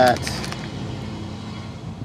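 A steady low outdoor background hum, with no sharp sounds, following a single spoken word at the start.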